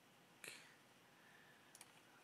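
Near silence broken by computer mouse clicks: one sharp click about half a second in and a couple of faint ones near the end.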